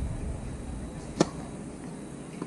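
One sharp knock of a tennis ball striking a hard court surface, about a second in, over a low wind rumble on the microphone.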